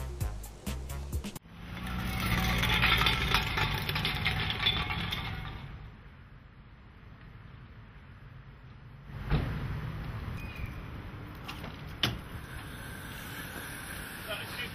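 A short stretch of music that cuts off abruptly about a second and a half in, then a car running with a clatter mixed in, fading away after a few seconds. Later two sharp car-door thumps, about two and a half seconds apart.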